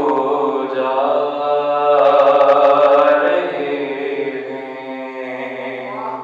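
A man chanting a religious recitation solo into a microphone, unaccompanied, in long drawn-out held notes. It is loudest about two seconds in and grows softer towards the end.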